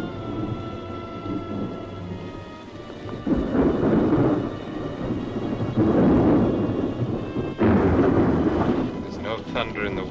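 Thunder in a film's storm soundtrack: three heavy rolls, the first about three seconds in and the last breaking with a sudden crack about two seconds before the end, over the film's background score.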